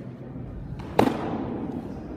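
A pitched baseball popping into a catcher's leather mitt: one sharp, loud pop about a second in, echoing briefly around the indoor hall.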